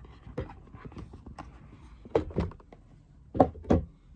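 Small cardboard box being opened by hand on a wooden table: the lid lifted off and the box handled, giving scattered soft knocks and cardboard scrapes, with two sharper knocks near the end.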